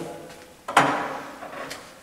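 A smoke detector's removed filter being set down on a table: one sudden clunk about two-thirds of a second in, fading away over about a second.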